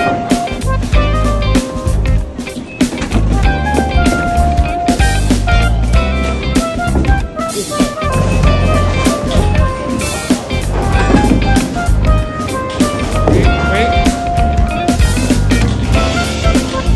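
Background music with guitar and drums over a steady beat.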